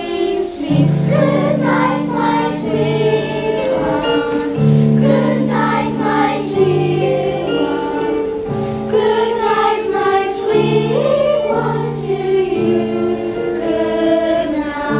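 Children's choir singing a slow song in unison, over a keyboard accompaniment that plays low held notes changing about every two seconds.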